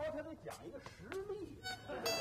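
Faint background music, then a mobile phone ringtone starts near the end.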